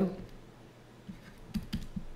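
A few light taps and clicks of a stylus on a pen tablet while handwriting, bunched together about a second and a half in.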